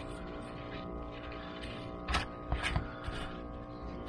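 Gloved hands sifting through crumpled aluminium scraps and dirt on a rubber mat, giving a few short crinkling, scraping rustles about two to three seconds in, over a steady faint hum of tones.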